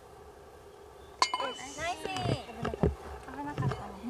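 A golf ball drops into the hole's cup with a sharp clink about a second in, and women's voices then exclaim.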